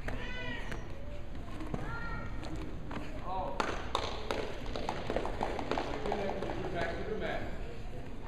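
Voices of people around the mat calling out in short shouts, with a run of light knocks and scuffs in the middle.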